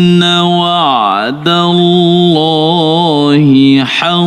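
A male qari reciting the Quran in melodic tarannum style, holding long ornamented notes. The first note dips in pitch and climbs back. After a brief pause about a second and a half in, a second long note wavers through its ornaments.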